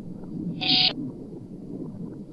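Garbled, chopped fragments of reversed human speech from a necrophonic sound bank, played back over a low, jumbled murmur. A short, bright, hissy burst with a held tone comes just under a second in.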